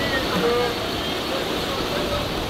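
Steady low rumble of idling school buses, with faint voices of people talking over it.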